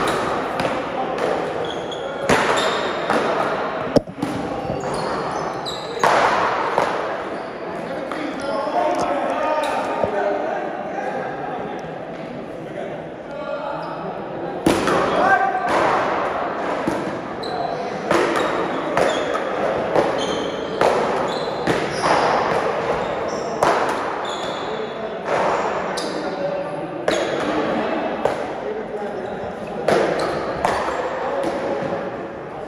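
One-wall paddleball rally: a series of sharp, irregularly spaced hits of the ball off paddles and the wall, echoing in a large hall, with a quieter lull near the middle before the hits resume.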